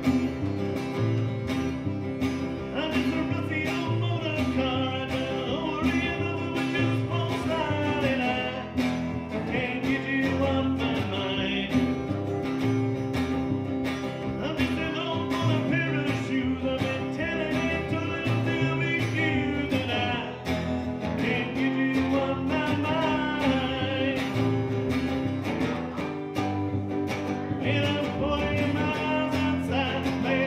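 Acoustic guitar strummed with a plucked upright double bass, and a man singing over them.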